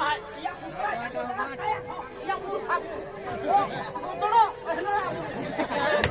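Speech: people talking on stage, with a faint steady tone held under the voices.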